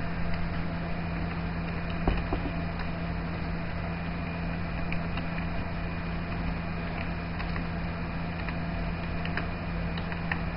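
Steady electrical hum and hiss from the recording, with a few faint, scattered clicks of computer keys as a command is typed.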